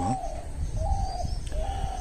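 A dove cooing in the background: a few short, clear coos, each well under half a second.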